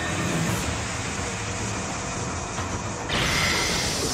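Anime energy-aura sound effect: a steady low rumble with a hiss over it, swelling louder and brighter about three seconds in.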